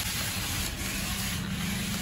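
Remote-control toy car driving: a steady whirring, rushing noise from its small electric motor and wheels.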